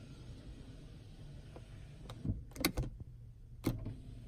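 The power rear sliding window motor of a 2017 Ram 1500 runs steadily with a low hum as it drives the glass along its cable and track. A few sharp clicks come between about two and three and a half seconds in. The sticking track has just been lubed and still moves a little stiff.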